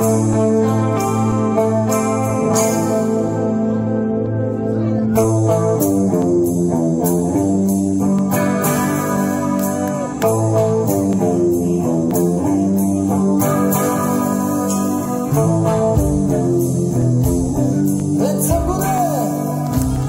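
A heavy metal band playing live through a club PA: electric guitars holding sustained notes over drums, with the cymbals dropping out briefly and coming back in.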